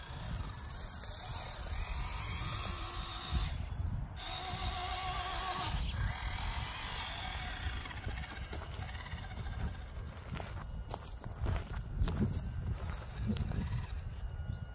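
Small electric motor and geartrain of an Axial SCX24 1/24-scale crawler whining, its pitch wavering as the throttle changes while it climbs, over a steady low rumble of wind on the microphone. A few light clicks and knocks as the tyres grip and slip on the stump come near the end.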